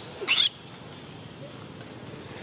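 A young macaque gives one short, high-pitched squeal about a quarter second in.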